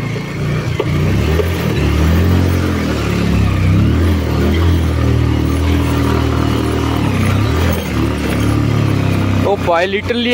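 Motorcycle engine pulling at low revs, its pitch rising and falling as the throttle is worked over a rough, rocky dirt track, with a steady rushing noise over it. A short shout comes near the end.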